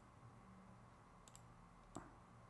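Near silence: room tone with a faint low hum, broken by two faint short clicks, one about one and a half seconds in and one near the end.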